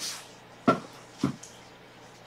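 Two short knocks about half a second apart, from a hand moving things on the desk close to the microphone.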